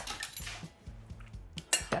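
Crockery and kitchen utensils clinking faintly as dishes are handled, with one sharp clink near the end.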